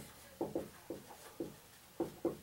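Dry-erase marker writing on a whiteboard: about five short separate strokes as letters are written.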